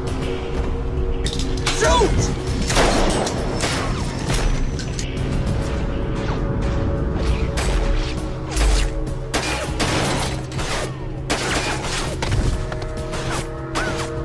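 Film-soundtrack gunfight: a dozen or so sharp pistol shots and hits, irregularly spaced, over a dramatic action score with sustained low tones.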